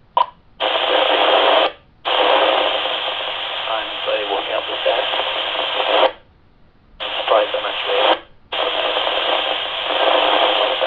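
Kenwood TK-3701D PMR446 walkie-talkie speaker receiving a weak transmission: a loud rush of static hiss with faint speech buried under it. The signal is weak because the transmitting radio is in a tunnel under a road, with no line of sight. The sound cuts out briefly three times as the squelch closes.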